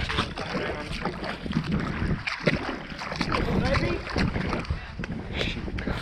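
Feet splashing through shallow water, with wind buffeting the microphone.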